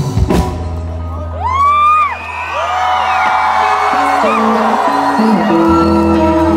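Live rock band playing: a few drum hits at the start, then a held bass note under electric guitar notes. High rising-and-falling whoops sound over it about one and a half to three seconds in.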